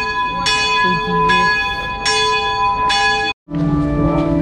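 Church bells ringing, a fresh strike about every 0.8 s over the long ring of the earlier strikes. The ringing cuts off abruptly near the end, and organ music begins after a brief silence.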